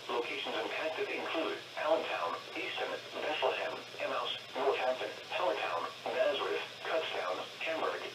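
Speech only: a NOAA Weather Radio broadcast voice reading a severe thunderstorm warning, heard through a weather radio's small speaker, thin-sounding and without bass.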